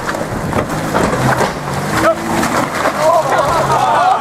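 Nissan Xterra's 4.0-litre V6 engine running as the SUV crawls up a muddy trail, with scattered clicks from the ground under the tyres. People's voices call out, loudest in the last second.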